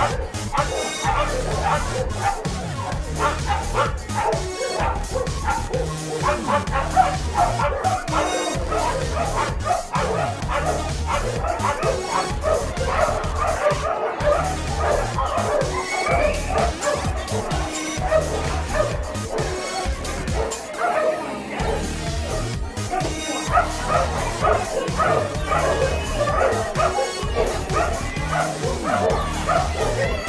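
Many dogs barking and yipping without pause, the excited barking of dogs at flyball racing, over background music.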